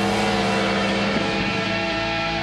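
Yamaha R1 sport motorcycle engine running at steady revs, a held drone with a slight dip in pitch a little past a second in.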